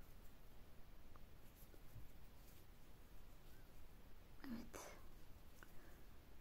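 Near silence, with faint soft ticks and rustles from a crochet hook working yarn. About four and a half seconds in comes a brief soft whisper.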